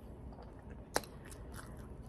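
Faint room tone with a single short, sharp click about halfway through.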